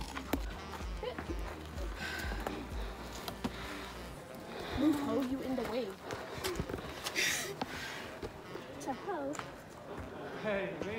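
Faint, indistinct voices with a few scattered clicks and rustles. A pulsing low rumble sits on the microphone for the first four seconds or so, then stops.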